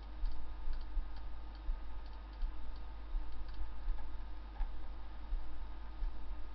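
Irregular light clicks from a computer mouse as vertices are selected and dragged, over a steady low electrical hum on the recording.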